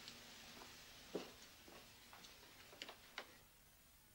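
Near silence with a few faint, sharp clicks and taps at irregular intervals, the clearest about a second in and another just after three seconds.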